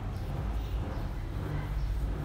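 Steady background noise with a low hum underneath, and no distinct sounds standing out.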